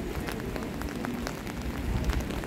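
Steady rain falling on a wet street, with scattered sharp ticks of single drops over an even hiss and a low rumble beneath.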